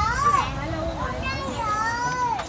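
Two short high-pitched voice calls, each rising then falling in pitch, about a second and a half apart, over faint street noise.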